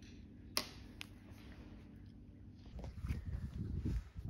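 Two faint sharp clicks about half a second apart near the start, from a small steel 608 ball bearing and thin aluminium can-shim pieces being handled on a stone countertop, then low rustling handling noise in the last second or so.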